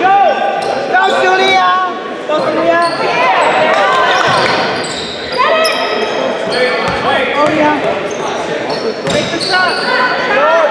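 A basketball bouncing on a hardwood gym floor during play, with sneakers squeaking in short chirps throughout.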